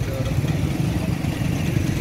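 Steady low, rough rumble of roadside street noise.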